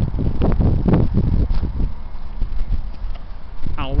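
Handling knocks and footsteps as a handheld camera is carried along a park path and turned round, most of them in the first two seconds, over a steady low rumble.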